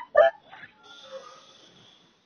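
A brief voice fragment at the very start, then a pause on a recorded phone call with only faint line hiss.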